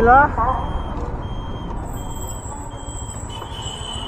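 Motorcycle engine running at low speed with road and wind noise as the bike rolls through traffic. A short high beep repeats about every three-quarters of a second through the middle.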